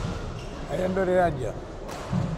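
A short shouted call in the hall, then near the end a sharp crack of a racket hitting a shuttlecock.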